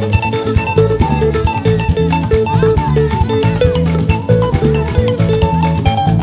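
Upbeat praise band music: a guitar repeats a short figure of quick notes, a little over two a second, over bass and a steady drum beat.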